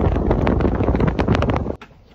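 Wind buffeting the microphone on an open convertible at road speed, a loud rushing noise with crackles and low rumble. It cuts off suddenly near the end.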